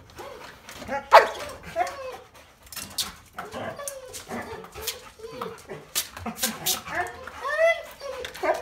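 Dog moaning and whining in repeated rising-and-falling calls, with a few short sharp yelps among them.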